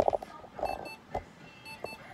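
Electronic beeping: short high pips in quick pairs and threes, repeating about once a second, with a few knocks and handling bumps mixed in.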